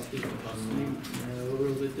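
A man speaking in a low voice, slowly, with long drawn-out syllables.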